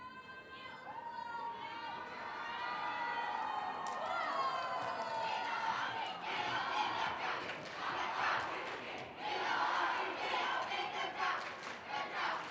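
A crowd of students cheering and shouting, building up over the first few seconds, with some clapping.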